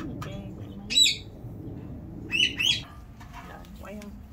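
A small bird chirping: one short call about a second in, then two more in quick succession midway.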